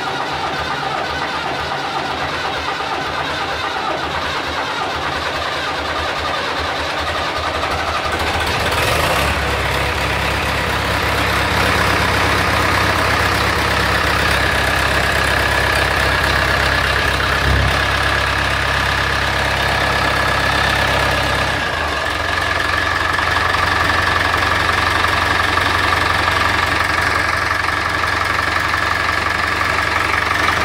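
1974 David Brown 996's four-cylinder diesel engine running just after a cold start, with the cold-start tap in. The engine has low compression from broken top piston rings. It runs heavier and louder from about nine seconds in, then eases back a little at about twenty-two seconds.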